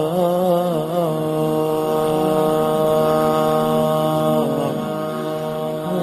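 Male voice singing the opening of a nasheed in long, drawn-out held notes, wavering in pitch at first, then holding steady, shifting note about two-thirds of the way through.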